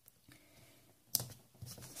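Small handling sounds of washi tape and stickers on a paper planner page: near quiet at first, then one sharp click a little past halfway and a few softer ticks after it.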